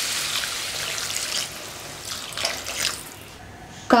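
Water poured from a steel tumbler into a hot kadai of frying vegetables, splashing as the sizzle dies down and the pan goes quiet near the end. About half a litre of water is added so the vegetables can boil.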